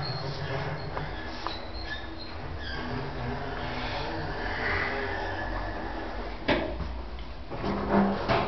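Station passenger lift running with a low steady hum, and a single knock about six and a half seconds in.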